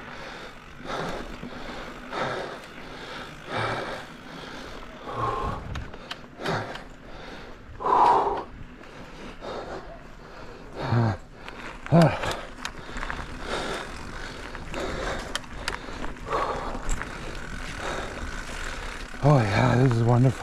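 Mountain bike rolling fast down a dirt singletrack: tyre noise on the dirt with frequent knocks and rattles of the chain and frame over bumps, and a few short vocal sounds from the rider.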